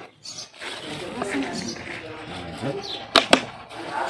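People talking, with two sharp clicks a fraction of a second apart about three seconds in.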